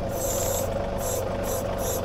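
John Deere compact diesel tractor running steadily, with its backhoe hydraulics hissing in four short bursts as the controls are worked.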